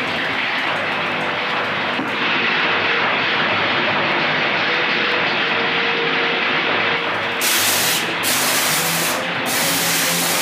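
Electrical lab spark apparatus buzzing and crackling in a dense, steady hiss with a faint steady hum under it. From about two seconds in to about seven seconds in the sound turns duller, then turns bright again.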